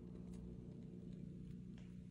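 Quiet room tone: a faint, steady low hum with a few faint ticks.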